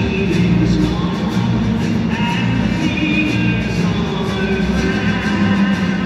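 Music playing over a football stadium's sound system, with the crowd singing along.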